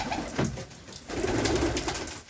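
Domestic pigeons cooing, a low steady sound that drops away briefly about half a second in and then comes back.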